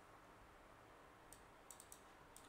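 Near silence broken by faint clicks of a computer mouse: a pair just past halfway, then a quick run of several near the end.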